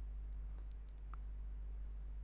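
Faint clicks of a stylus tapping on a tablet screen while handwriting, a few light taps in the first half, over a steady low electrical hum.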